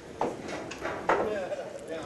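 Two sharp clacks of billiard balls colliding, about a quarter second and a second in, over faint voices in a pool hall.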